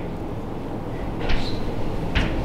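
A few short chalk strokes tapping and scratching on a blackboard about a second in, over a steady low room rumble.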